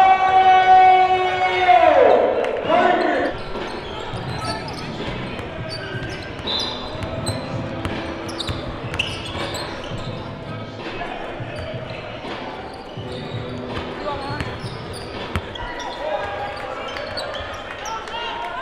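Indoor basketball game: a long, loud held shout of "ohh" at the start that falls in pitch and ends after about three seconds, then a basketball bouncing on the hardwood floor amid crowd chatter echoing in the gym.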